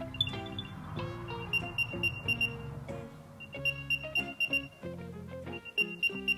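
Apple AirTag playing its locate sound: short runs of quick, high beeps that repeat about every two seconds, starting about a second and a half in, over background guitar music.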